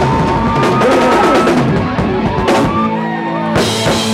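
Live rock band playing on drum kit and amplified instruments, with cymbal crashes about two and a half seconds in and again near the end. A steady held chord rings under them from just before three seconds in, typical of a song's closing flourish.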